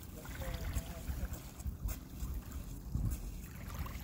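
Wind buffeting the phone's microphone in an uneven low rumble, with a few crunches of footsteps on pebbly beach sand.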